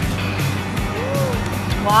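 Background music with a steady beat. About a second in, a short vocal hum rises and falls in pitch.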